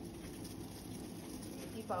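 Steady low hiss of a steel pot of water heating on a gas stove.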